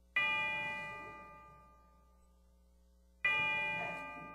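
A bell struck twice, about three seconds apart; each strike rings with several clear tones and fades away over about two seconds.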